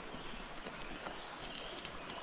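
Steady, even rush of a small mountain creek's flowing water, with a few faint clicks.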